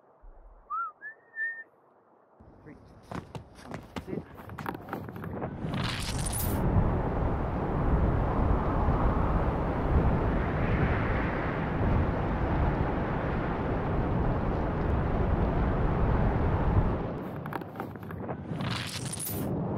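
Freefall wind rushing over the camera microphone as a BASE jumper leaves the cliff and accelerates. It builds from near silence a couple of seconds in to a loud, steady rush by about six seconds, then eases off near the end amid sharp rustling. A short rising chirp sounds just after the start.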